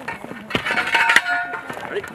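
Metal clinks and knocks with short ringing tones as sections of a Bangalore torpedo tube are handled and joined, with men's voices talking.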